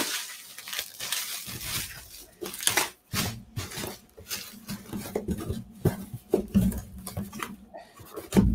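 Bubble wrap and plastic crinkling and rustling as it is pressed into a cardboard box, with the cardboard flaps folded and the box handled, giving irregular crackles and small knocks.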